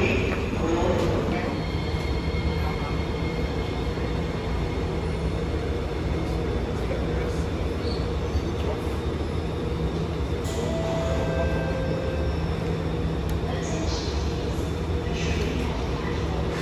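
Interior running noise of an SMRT R151 metro train: a steady low rumble of wheels and car body, with faint steady tones from the electric traction equipment.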